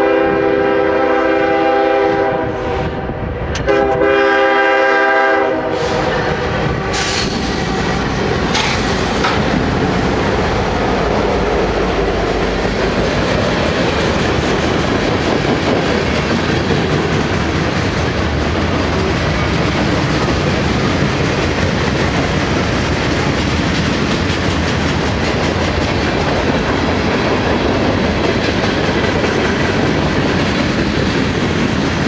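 Norfolk Southern freight train's lead locomotive, an EMD SD70ACe, sounding its horn in two long blasts as it approaches. The locomotives then pass, and a long string of freight cars (covered hoppers and tank cars) rolls by with a steady rumble and clatter of wheels on rail.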